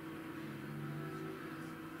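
Quiet room tone: a steady low hum of a few constant tones with a faint hiss, unchanging throughout.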